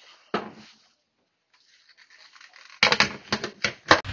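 Plastic blender jar and lid being handled and fitted together: a single knock shortly after the start, then a quick run of sharp plastic clacks near the end.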